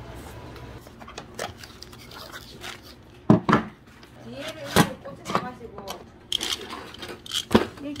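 Sharp clicks and knocks of small hard parts being handled and set down on a tabletop, coming irregularly from about three seconds in, with a brief murmur of a man's voice among them.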